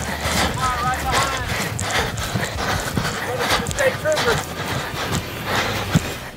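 Several people shouting encouragement over a run of quick, irregular thuds, with two short raised calls about one and four seconds in.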